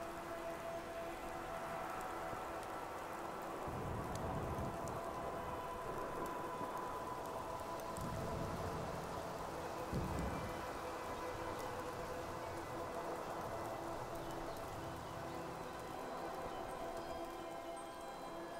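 Steady night-wind ambience, a rushing noise, under soft ambient music with long held notes. A few low rumbles come and go, about four, eight and ten seconds in.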